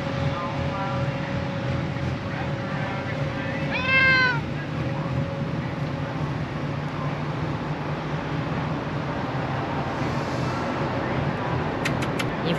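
A Bengal cat meows once, about four seconds in: a single short call that rises and then falls in pitch, over a steady low background hum.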